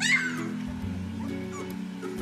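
A cat meowing once, loud and high, right at the start, with a couple of fainter short cries after it, over background music.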